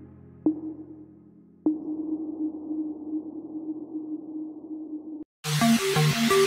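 The quiet outro of an electronic music track: a held synth note, struck again twice about a second apart and left ringing. It stops abruptly, and after a brief silence near the end the next electronic dance track comes in loud with a driving beat.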